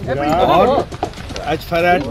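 Voices speaking: talk in the reporters' clip that the recogniser did not write down.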